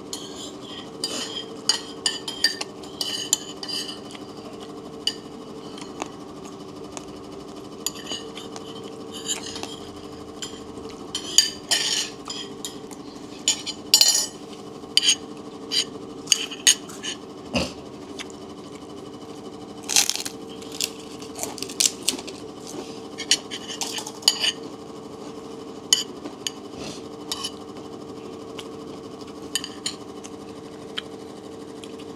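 A metal spoon clinking and scraping on a plate in short irregular taps while eating, over a steady low hum.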